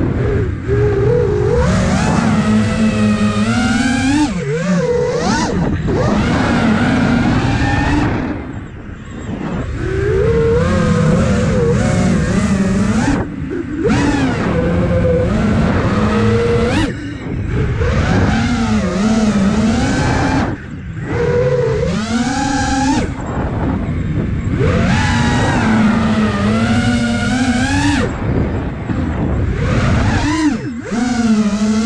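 Brushless motors and propellers of an iFlight Nazgul Evoque F5 5-inch FPV quadcopter whining in flight, heard from the camera on the drone. The pitch rises and falls constantly with the throttle, and the sound dips briefly several times as the throttle is eased off.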